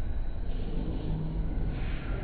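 Steady low rumble of background noise with no distinct knocks or clanks.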